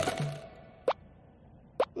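Two short cartoon 'plop' sound effects, about a second apart, as the background music dies away.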